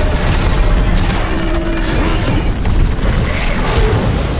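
Sound effects for a huge magical fire blast: a continuous deep rumble with a rushing noise over it, holding loud and steady throughout.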